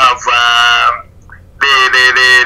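Speech only: a man talking in two short stretches with a brief pause between them.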